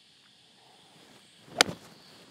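Golf iron striking a ball off range turf: a single sharp crack about one and a half seconds in, with a short tail after it.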